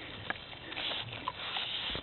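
Pygmy goat nibbling and tugging at the twigs of a small tree: quiet rustling with a few small clicks and snaps.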